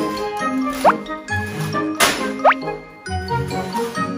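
Background music, a light plinking tune of short notes, with two quick rising whistle-like sound effects, one about a second in and another about two and a half seconds in.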